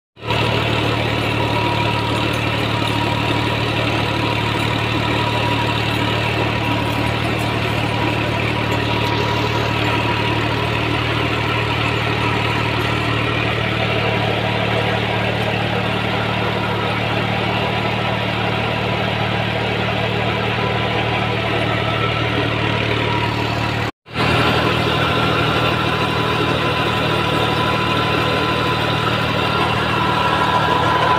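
Farm tractor's diesel engine running steadily under load as it drives a rotavator through dry soil. The sound drops out for an instant late on, then carries on as before.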